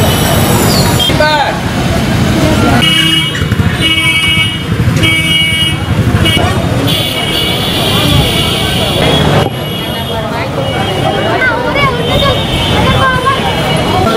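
Vehicle horn honking: three short toots, then a longer blast. Crowd voices and street traffic run underneath.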